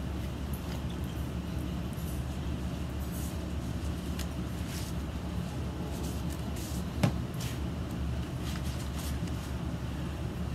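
A steady low hum, with faint rustling as raw beef short ribs are handled on butcher paper and one sharp click about seven seconds in.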